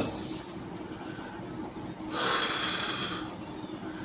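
A man's audible breath, about a second long, picked up close by a lapel microphone, about two seconds in, over a faint steady room hum.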